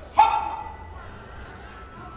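A single loud dog bark about a fifth of a second in, fading quickly, over low background murmur.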